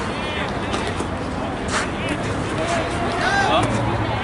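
Football players' voices and short shouts over a background hubbub on the pitch, with a couple of sharp knocks about a second and a second and a half in.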